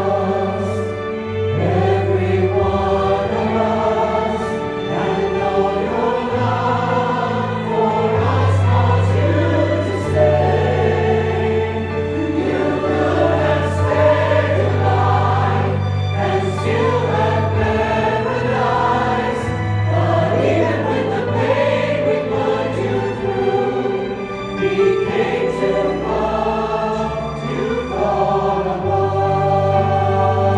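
A choir singing a gospel song in parts over an accompaniment of long held bass notes that change every few seconds.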